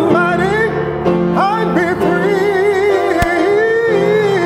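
A man singing long held notes in a gospel church style with a wide, wobbling vibrato, over sustained piano chords.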